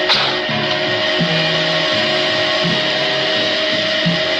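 Cartoon sound effect of a giant vacuum cleaner switched on and running: a loud, steady whirring hiss with a held whine, over background music with a low bass line.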